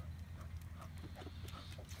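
A cocker spaniel's paws on a driveway as it trots in: faint, quick, irregular ticks over a low steady rumble.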